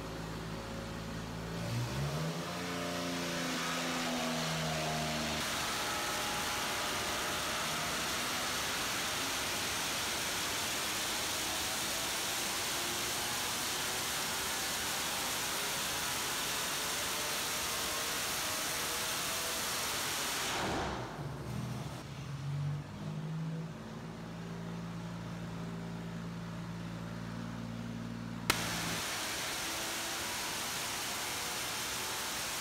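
Supercharged GM 3800 Series III V6 on an engine dyno, exhaling through open headers: it idles, revs up about two seconds in, runs hard at high speed and load for about fifteen seconds, then drops back to idle. A click and a steady hiss take over near the end.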